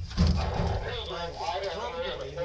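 A woman's voice talking softly to the cats, with a few low thuds near the start as the camera or box is handled.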